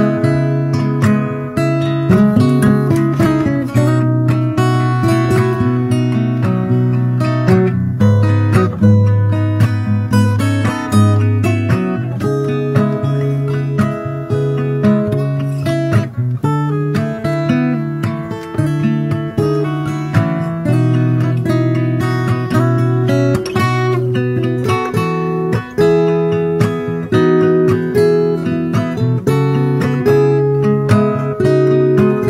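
Background music: strummed acoustic guitar with a steady rhythm.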